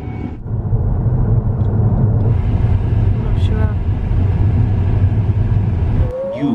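A car driving, heard from inside the cabin: a steady low road-and-engine rumble with tyre hiss that grows about two seconds in. A brief faint voice is heard midway.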